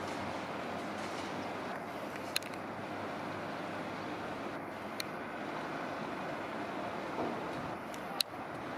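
Steady rumble and hiss of a suburban electric train approaching along the line, with two sharp clicks, one about two and a half seconds in and one about five seconds in.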